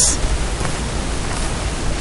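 Steady hiss of background noise on the recording.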